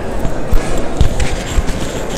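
A few irregular low thumps, about three in two seconds, over the background chatter of people in a large hall.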